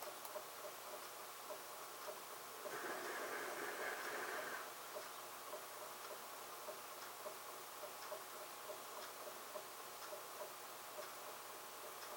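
Faint, regular ticking, a few ticks a second, with a brief swell of hissing noise about three seconds in that lasts about two seconds.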